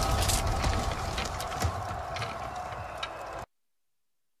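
Fading tail of a promo trailer's soundtrack: a low rumble with a few held tones and scattered sharp clicks, steadily dying away, then cut off abruptly to silence about three and a half seconds in.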